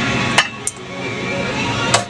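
Stainless steel saucepan clanking as it is set down on metal: two sharp knocks in the first second and another near the end.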